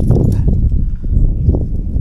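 Handling noise from a phone on a gimbal stick being moved about: a dense rumble with irregular knocks and rubbing.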